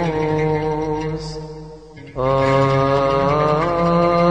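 Coptic Orthodox hymn chanted by a man, a long drawn-out vowel melisma sung over a lower held note. The sound dips briefly about halfway through for a breath, then a new long note begins and rises slightly in pitch near the end.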